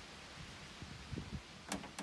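Faint handling sounds as beach towels are set down on a plastic kids' wagon: a few soft low knocks in the middle and one short click near the end.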